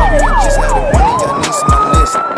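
Ambulance siren in fast yelp mode, pitch sweeping up and down about four times a second, then switching about a second in to a rising tone that levels off and holds.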